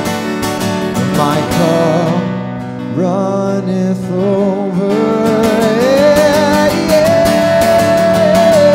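Acoustic guitar strummed steadily under a man's sung vocal line, a slow worship song; the playing thins briefly about two and a half seconds in before the strumming and singing pick up again.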